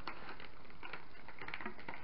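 Faint handling noise: scattered light ticks and rustles over a steady low hiss, as small items and a plastic packet are handled by hand.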